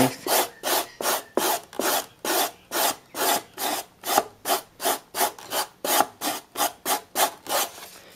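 Coarse abrasive disc rubbed by hand back and forth across expanded polystyrene foam, smoothing the slab flat. It is a run of short, even rasping scrapes, about three strokes a second.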